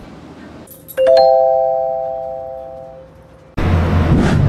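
A doorbell-like chime of three quick rising notes that ring out and fade over about two seconds. Near the end a loud steady noise cuts in.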